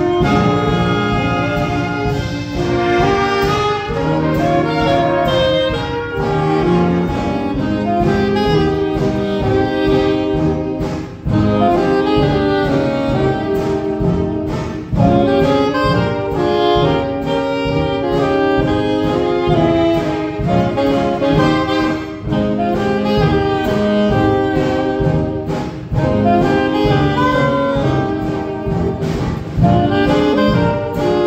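A vintage-style dance orchestra playing live: a saxophone section and brass carry a 1930-era dance-band arrangement, with violin and drums in the band.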